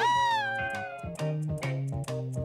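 A kitten's meow: one long cry that starts high and slides down over about a second, over background music.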